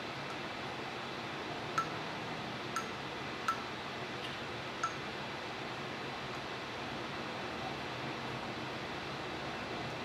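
Four small metallic clinks of tools at the component during capacitor removal on a phone logic board, over a faint steady hum of bench equipment.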